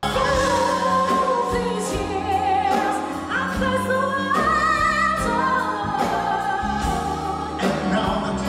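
Live concert recording of a singer backed by a band and orchestra, with long notes held with vibrato that step up in pitch around the middle, recorded in the hall rather than from the sound desk.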